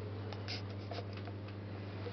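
Steady low hum of the train carriage, with a few short, faint rustles and clicks about half a second and a second in.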